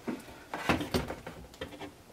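A string of light knocks and scuffs as a model-railway scenery wall panel is handled and shifted against the baseboard.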